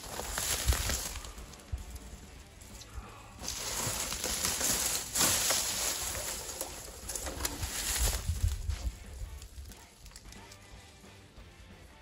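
Dry grass, leaves and twigs rustling and crackling as a person steps through brush and pulls a large moose antler free of it, loudest in the middle few seconds.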